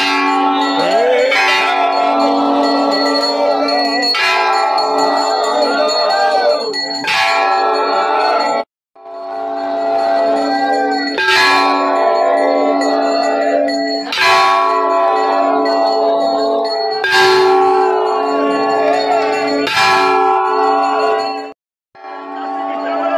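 Brass temple bells ringing without pause, with a heavy metal strike, likely the hanging gong, about every three seconds, over voices chanting. The sound drops out abruptly for a moment twice.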